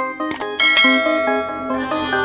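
Intro jingle music: a melody of short, bright pitched notes with two quick clicks, swelling about half a second in into a fuller electronic music bed.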